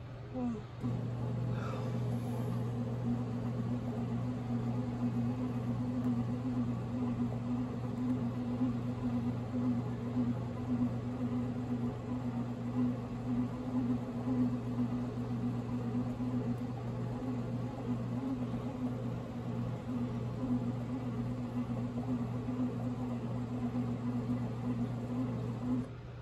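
Pohl Schmitt bread machine's kneading motor starting about a second in and running steadily as a low hum while it kneads the dough, then cutting off near the end.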